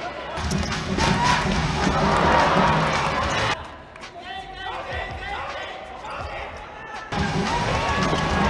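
Futsal match sound on an indoor court: loud crowd noise with short knocks of play, cutting off suddenly about three and a half seconds in to a quieter stretch of shoes squeaking on the floor, then the crowd noise returns just as suddenly near the end.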